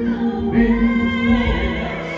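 Christmas show music: a choir singing held notes over accompaniment, played over the show's sound system.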